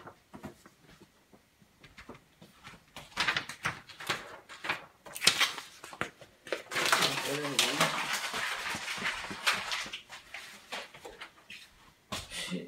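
Sheets of sublimation paper being handled at a heat press: light taps and clicks, then a stretch of steady paper rustling. A short low voice-like sound wavers under the rustle about seven seconds in.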